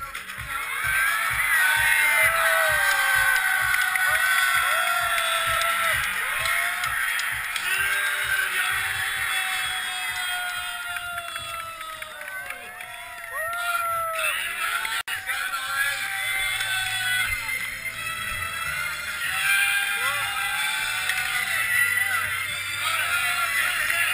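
Hip-hop backing music with a steady beat and wavering, bending melody lines; the beat changes after a brief dropout about two-thirds of the way through.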